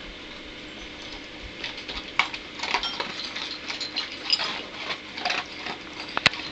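Two dogs, a German Shepherd and an Akita–German Shepherd mix, eating dry kibble from bowls: irregular crunching and clicking of food against the bowls. It starts sparse and gets busier after about a second and a half.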